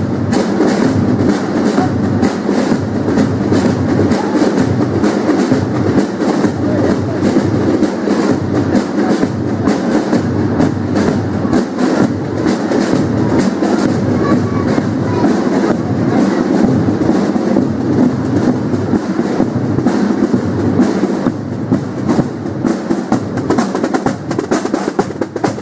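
Military drum and fife band playing a march, with a steady marching beat of drums under the fifes.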